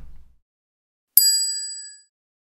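A single bright ding, an edited-in sound effect, struck sharply about a second in, its clear high tones fading before cutting off near the end.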